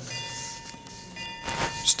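Faint steady high-pitched tones, a few held together, over the hall's room noise, with a short rush of noise near the end.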